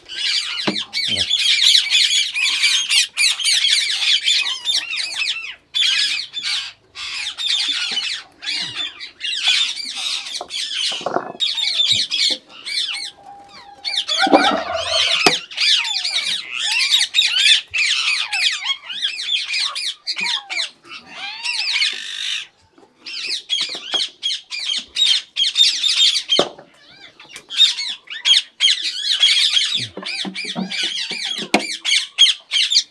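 A flock of Indian ringneck parakeets squawking and chattering, shrill calls coming in long runs broken by a few short pauses.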